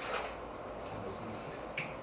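Marker writing on a whiteboard: a short stroke at the start, a fainter one about a second in, and a sharp click near the end.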